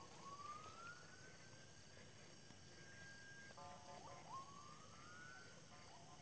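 Near silence, with a faint distant whine that rises slowly in pitch twice. The first rise levels off and stops about three and a half seconds in, and the second starts soon after.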